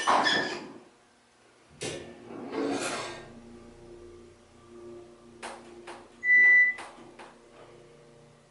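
Otis hydraulic elevator starting up: a click and surge about two seconds in, then a steady low hum from the pump motor as the car rises. About six seconds in, a single short electronic beep, the loudest sound, comes with a few sharp clicks around it. A brief rustle comes at the very start.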